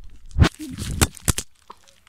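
A plastic bag crinkling and rustling close to the phone's microphone, with a few handling knocks. The burst lasts about a second and then dies away.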